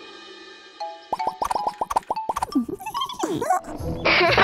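Cartoon sound effects: a held musical chord fades out. It is followed by a quick run of about eight popping plops, then a few squeaky sounds that slide up and down in pitch.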